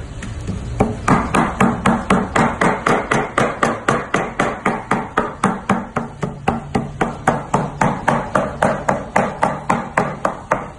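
A heavy cleaver chopping raw meat on a wooden butcher's block in steady, fast strokes, about four a second, starting a little under a second in. The meat is being minced by hand for kebab.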